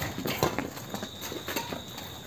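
Badminton rally on a concrete court: rackets striking the shuttlecock and players' shoes tapping and scuffing on the concrete, a quick irregular series of sharp clicks.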